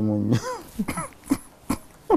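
A man's long held vocal note breaks off, followed by several short coughs and throat clearing.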